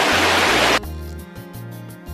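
Loud rushing of a mountain stream over background music. The water cuts off abruptly under a second in, leaving the soft instrumental music alone.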